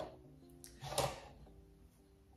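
Soft background music of held notes, with two brief knocks, one at the start and one about a second in, as the sharpeners' stone holders are handled.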